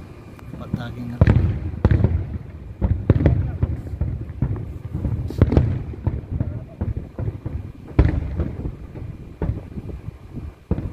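Aerial firework shells bursting in an irregular run of loud bangs, the biggest about a second in, near three and five and a half seconds, and at eight seconds, with low rumbling between them.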